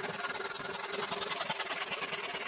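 Electric jigsaw running steadily and cutting plywood, a fast, even buzz from the reciprocating blade.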